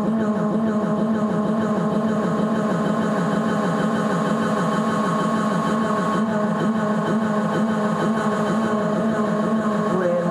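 Modular synthesizer playing a dense, steady electronic drone of many stacked tones, strongest low in the range, with a fast, even wavering in pitch.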